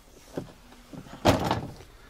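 A faint click, then one sharp knock about a second and a quarter in that dies away quickly.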